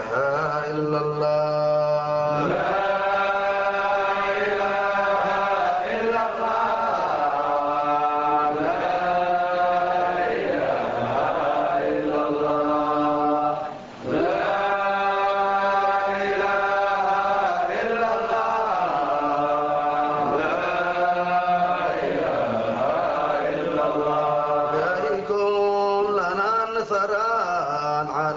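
Sufi dhikr chant sung in Arabic, the voice drawing out long held notes. There is a brief break about 14 seconds in.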